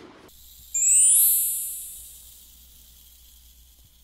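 An editing sound effect: a high, glittering chime that sweeps up in pitch, rings loudest about a second in, then fades away over about a second and a half.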